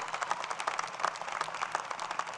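Outdoor crowd applauding: many people clapping steadily, with no cheering.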